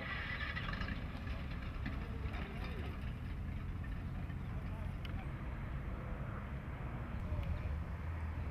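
Outdoor ambience: a steady low rumble with faint, indistinct voices in the distance.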